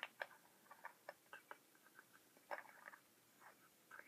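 Faint, scattered small clicks and ticks of pliers gripping and clamping a wire hook onto a Christmas ornament's metal cap, with a brief cluster of clicks about two and a half seconds in.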